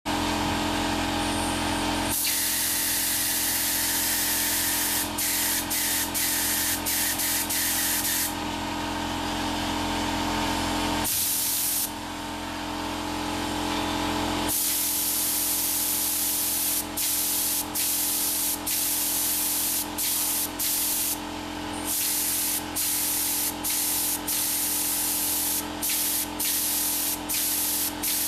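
Spray gun for spray-on chrome hissing as it sprays a fine mist. The hiss is long and steady at first, then keeps breaking off for short moments many times through the second half, as the trigger is let off and pulled again. A steady hum runs underneath.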